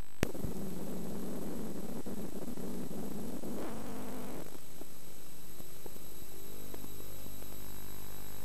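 Playback noise from a VHS tape between recordings: a steady hiss and hum with a thin high-pitched whine. A sharp click comes just after the start, and a rough, rumbling noise for the first four seconds or so then thins out to the plain hiss.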